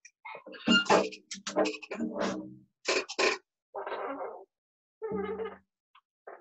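Knocks, bumps and rubbing as a hand drum and its wooden beater are picked up and handled close to the microphone, in a run of irregular short noises.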